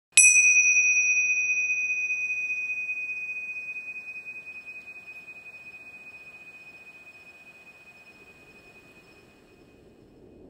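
A single struck bell-like metallic tone in an ambient music track: one high, clear ring with a brief shimmer of higher overtones at the strike, fading slowly over about nine seconds.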